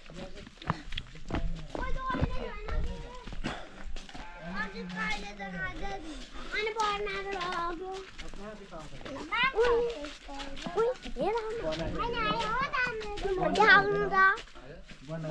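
Children's voices chattering and calling out, some high and rising, mixed with lower adult voices talking.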